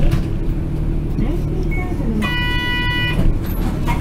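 A bus engine running at low speed, with a single steady beep lasting about a second, about two seconds in.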